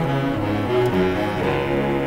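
Orchestral music: a bowed string section with cellos and double basses to the fore, playing a slow line of held low notes that change pitch every half second or so.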